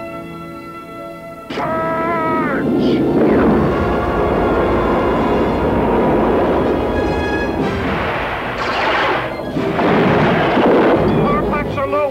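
Film space-battle sound effects: orchestral score for about a second and a half, then a sudden loud burst of spaceship engine rumble, laser zaps with gliding pitch and explosions. The loud rumble swells twice more, and a cluster of short zaps comes near the end.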